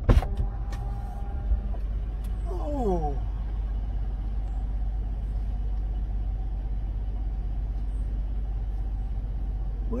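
A truck's passenger door unlatches with a sharp click and swings open, over the steady low hum of the idling engine. About two and a half seconds in, an old man's voice gives a short falling "oh".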